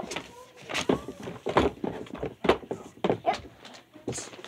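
Paper inserts and cardboard packaging being handled and folded: a string of irregular sharp rustles and crinkles.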